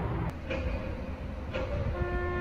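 Steady low outdoor rumble, like distant traffic or wind on the microphone. Faint soft music notes come in about half a second in and again near the end.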